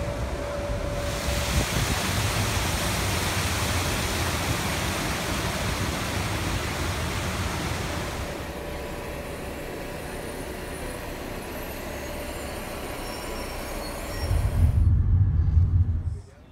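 Steady outdoor city ambience like traffic noise, a constant wash of noise that eases off about halfway through, with a faint steady hum, and a louder low rumble in the last second or so.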